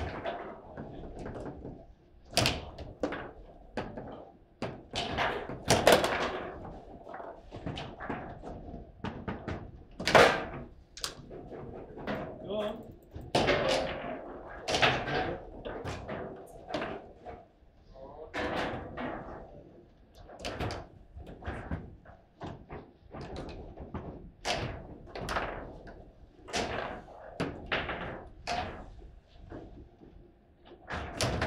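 Foosball table in fast match play: irregular sharp knocks and bangs as the ball is struck by the plastic men and rods slam against the table, with the loudest hard shots about six and ten seconds in.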